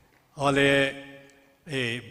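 Only speech: a man's voice saying two short, drawn-out words, with a pause of about half a second between them.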